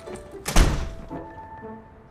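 A door shut hard: one heavy thud about half a second in that dies away quickly, over soft background music.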